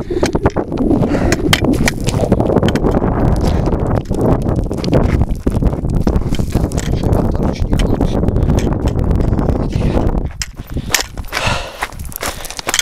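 Footsteps crunching on loose limestone gravel and stones, a dense run of sharp clicks and scrapes over a heavy low rumble on the microphone; it eases off about ten seconds in.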